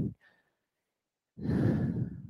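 A person's long breathy exhale, like a sigh, close to the microphone, coming after about a second of near silence.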